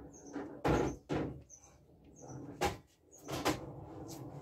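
A run of short knocks and clunks, about seven of them, the loudest about a second in, made around a pool table between shots.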